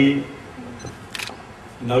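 A person's voice through a public-address microphone. It breaks off for a pause of over a second, with a single short click in the middle, and resumes near the end.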